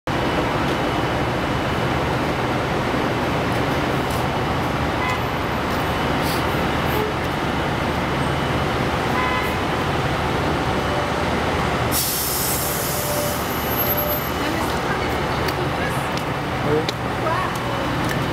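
Detroit Diesel 6V92TA two-stroke diesel engine of a Novabus Classic city bus running steadily as the bus drives up and past. A burst of hissing comes about twelve seconds in.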